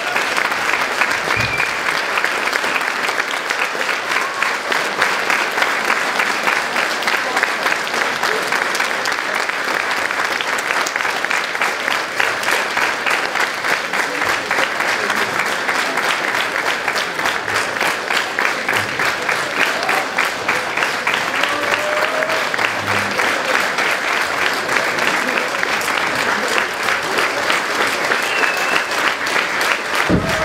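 Theatre audience applauding steadily throughout: a long, unbroken ovation at the end of the performance.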